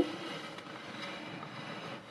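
Quiet, steady background hum and hiss (room tone) with no distinct event.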